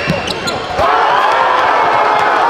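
A basketball bouncing on a gym's hardwood floor during play. About a second in, the gym crowd breaks into loud shouting and cheering.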